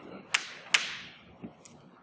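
Two sharp knocks about half a second apart, then a couple of fainter taps.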